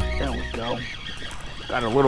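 Background music with a deep bass fading out in the first half second, then a man's voice talking.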